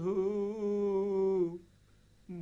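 A man's voice holding one long, slightly wavering note of a slow Bengali song, with no instruments heard. The note breaks off about one and a half seconds in.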